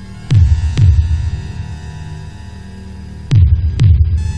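Film-score heartbeat effect: two pairs of deep thumps, each pair about half a second apart, the second pair about three seconds after the first, over a steady droning music bed.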